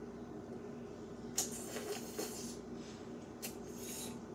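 Crackly, squishy sounds of eating frozen honey straight from the bottle, in a burst about a second and a half in and two short ones near the end, over a faint steady hum.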